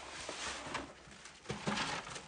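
Cardboard box flaps rustling as they are folded shut, then a couple of light knocks as a wooden wardrobe door is pushed closed, about a second and a half in.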